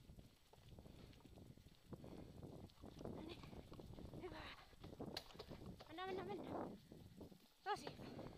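Short wavering vocal calls about halfway through and again after six seconds, and a sharp rising call near the end that is the loudest sound, over the steady low rumble of a dog-pulled kick scooter rolling along a leaf-strewn dirt trail.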